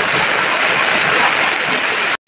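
Heavy rain falling steadily as an even hiss on a tarpaulin cover overhead.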